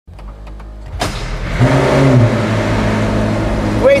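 McLaren P1's twin-turbo V8 starting about a second in, flaring briefly in revs and then settling into a steady idle.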